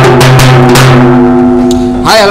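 Halgi, a frame drum, beaten with a thin stick in quick, loud strokes, with a steady ringing tone under the beats.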